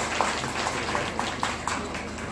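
Scattered hand clapping from a small audience, a few uneven claps a second.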